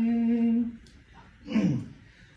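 A man's unaccompanied singing voice holds one long steady note that ends under a second in. After a short pause comes a brief vocal sound that glides downward in pitch.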